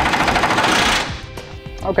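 Power wrench on a long socket extension, running in a fast rattling stream as it tightens a truck-bed mounting bolt, and stopping about a second in.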